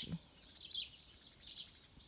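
Birds chirping: short, high calls repeated several times.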